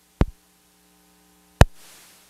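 Two sharp clicks about a second and a half apart over a faint steady electrical hum, the second click trailing off in a short hiss.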